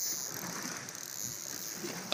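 Large spinning fishing reel being cranked, its gears making a steady whir as line is reeled in under the load of a hooked shark.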